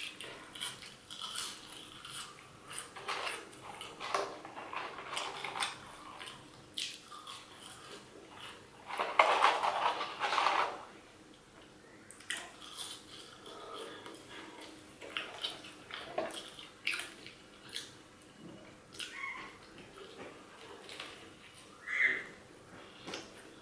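Close-miked chewing of French fries, with many small mouth clicks and a louder stretch of noise about nine to eleven seconds in.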